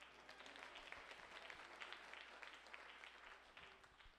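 Congregation applauding, a short round of many hands clapping that builds quickly and dies away near the end.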